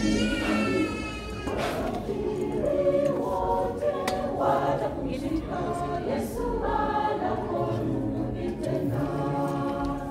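A church choir singing a hymn in several-part harmony, voices holding sustained chords that change every second or so.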